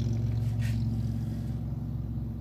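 A steady low mechanical hum with a brief faint hiss about half a second in.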